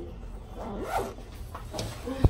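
Zipper on a black backpack being pulled shut, with a short zipping stroke about halfway through.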